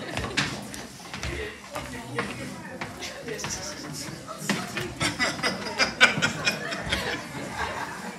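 Indistinct talking and chatter from several people in the room, with a few short knocks.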